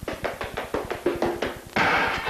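A quick, uneven run of sharp taps, about seven a second, some with a short pitched ring. Louder music comes in near the end.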